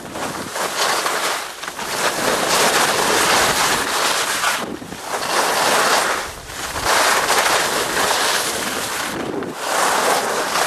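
Wind buffeting the microphone and the hiss of snow sliding under a rider coming down a ski slope. The noise is loud and swells and drops away about four times.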